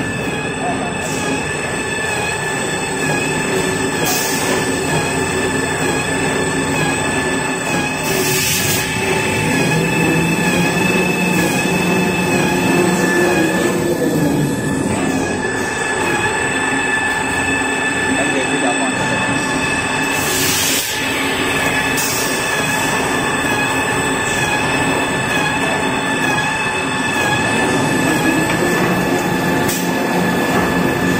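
Toilet paper making machine line running: a steady mechanical clatter with several constant high-pitched whines from its motors and chain conveyors, broken by a few short bursts of hiss.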